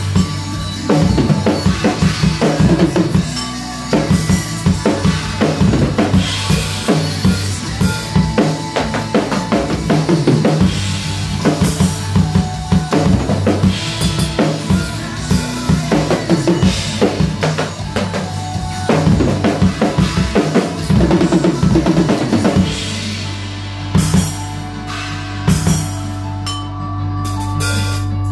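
A drum kit played hard and fast along to a recorded worship-rock track, with dense kick, snare and cymbal strikes. Near the end the drumming thins out to a couple of isolated hits over a held low note from the track.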